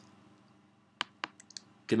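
About four short, sharp clicks from a computer mouse, spread over half a second, in an otherwise quiet room.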